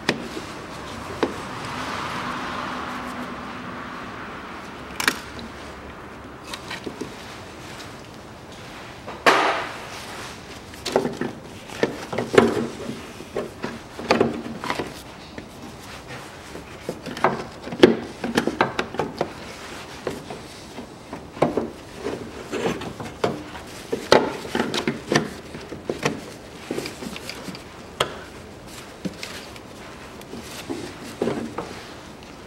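Hand work in a car's engine bay around the coolant expansion tank and its hoses: irregular clicks, knocks and clunks of plastic and metal parts being handled and fitted. A soft rustling swell comes in the first few seconds.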